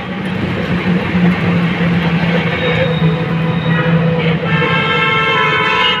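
Ride noise from an open rickshaw in town traffic: a steady rumble with a constant low hum. About four and a half seconds in, a long sustained tone with several pitches joins it and holds to the end.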